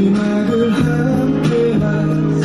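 Live pop song performance: band music with guitar prominent, playing steady sustained chords.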